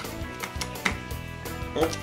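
A screwdriver tightening the screw on a knife clamp's metal plates: a few short metallic clicks and taps, about one at the start and another near one second in, over steady background music.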